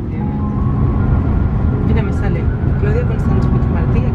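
Railway ambience: a loud low rumble with people talking over it.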